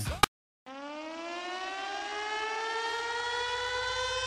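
A siren winding up: a single tone rising slowly and steadily in pitch, starting after a brief moment of dead silence about half a second in.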